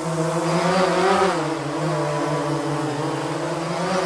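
Quadcopter drone's propellers humming steadily, a buzzing stack of tones that wavers slightly in pitch and swells briefly about a second in.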